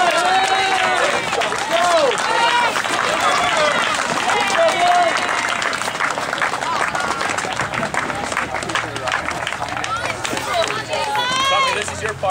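Many young children's voices shouting and chattering over one another.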